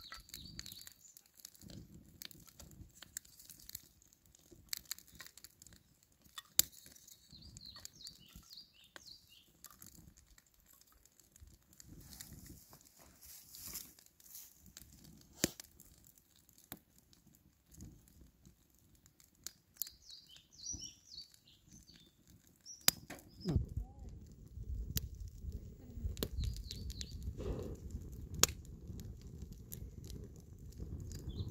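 Small kindling fire crackling, with irregular sharp pops as the split sticks catch, and birds chirping faintly now and then. About 23 seconds in, a louder low rumble comes in under the crackle.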